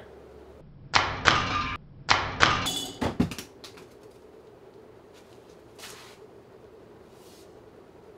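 Sharpened ceiling-fan blades chopping into a plastic-wrapped cucumber pushed up into them on a stick: two loud chopping bursts about a second apart, then a few quicker clicks just after. The fan keeps running faintly afterwards.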